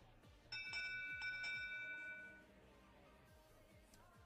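Electronic match-control chime sounding the end of the autonomous period: a bright multi-tone ring that starts suddenly about half a second in, is restruck a few times in quick succession, and fades after about two seconds.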